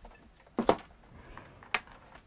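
Light handling noise from a white wired earphone set and its cable: a couple of soft plastic clicks a little over half a second in and another single click near the end.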